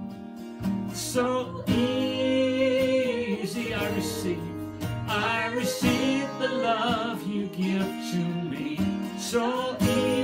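A man singing held phrases with vibrato to his own strummed acoustic guitar.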